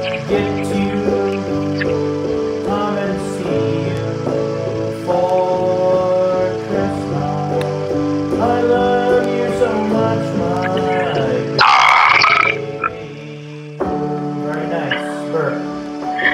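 Electronic keyboard playing held chords, with a voice singing along. About twelve seconds in, a short, loud burst of noise cuts across the music, and the music is briefly quieter after it.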